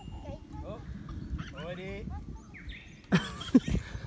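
Faint, high-pitched children's voices in the distance over a low rumble. About three seconds in comes a short burst of rustling handling noise as the phone is swung down.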